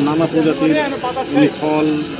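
A man speaking into a reporter's microphone: only speech, with a light hiss behind it.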